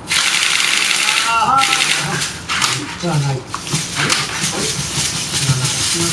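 Hobby-robot servo motors whirring and buzzing as a six-legged walking robot moves its legs. The sound is loudest in the first second and a half and returns in shorter bursts, with brief voices over it.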